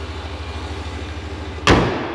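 A 5.7-litre Hemi V8 idling with a steady low pulse, then the hood slammed shut with a single loud bang about one and a half seconds in.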